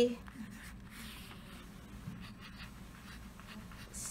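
A wooden pencil writing on paper: faint scratching of the lead in short, irregular strokes as letters are formed.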